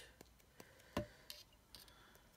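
Faint scattered clicks and taps, with one sharper tap about a second in, as a paintbrush is used to spatter a few water droplets onto an ink-blended card tag.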